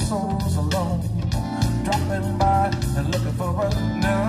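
Live rock band playing: an electric guitar line with bent notes over bass guitar and drums.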